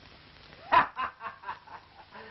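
A short burst of laughter: a loud first 'ha' just under a second in, then a few quicker, fading pulses, on an old film soundtrack.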